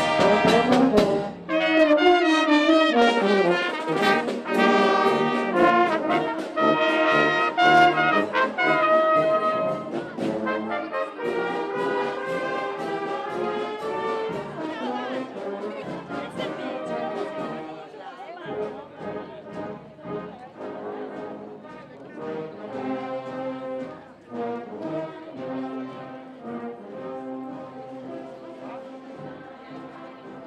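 Marching brass band playing a processional tune on horns, euphoniums and bass drum, with a steady beat. The music is loud at first, then grows fainter through the second half as the band moves on ahead.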